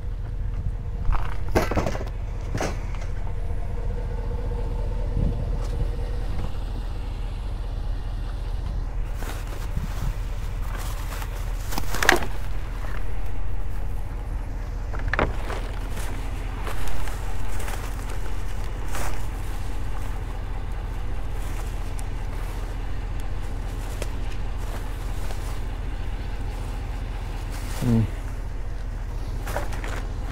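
A vehicle engine idling steadily, with now and then the rustle and crinkle of plastic bags being opened and handled.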